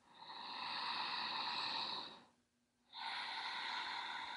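A woman's strong breaths through the nose in a paced breathing exercise: a long inhale of about two seconds, a short pause, then a long exhale.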